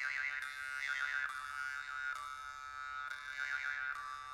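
Jaw harp (Yakut khomus) music: a steady drone with a melody of overtones wavering up and down above it.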